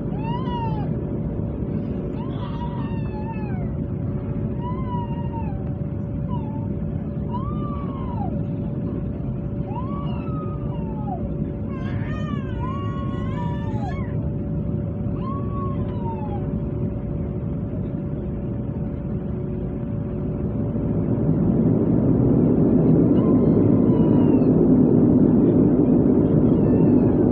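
Turboprop engine and propeller noise heard inside the cabin while taxiing: a steady drone with a steady tone, growing louder about 21 seconds in as power is added. Over it for the first two-thirds come a dozen or so short, rising-and-falling wailing cries.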